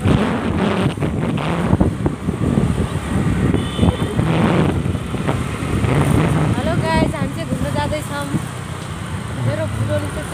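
Motor scooter riding along a road: steady wind rush on the microphone over the engine, with voices talking at times.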